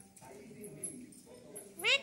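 A pet Alexandrine parakeet mimicking its name "Mithu": near the end, a loud, high-pitched call that rises sharply in pitch on the first syllable. Before it, only faint low mumbling.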